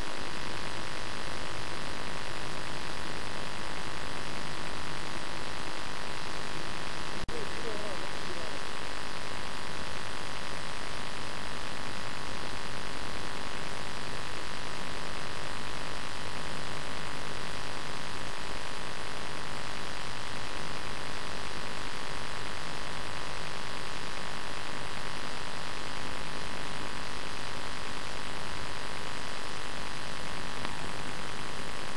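Steady hiss with a buzzing hum from an old analogue camcorder recording, unchanging throughout. It is broken by a brief dropout about seven seconds in.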